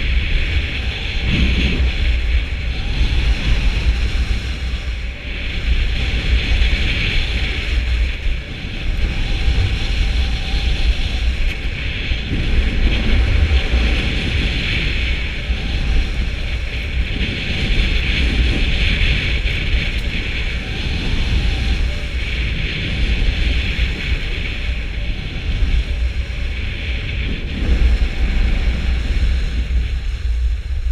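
Wind buffeting an action camera's microphone during a ski descent, heard as a deep rumble, over the hiss of skis running on groomed snow. The hiss swells every few seconds.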